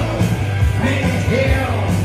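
Loud rock music with a singing voice over it.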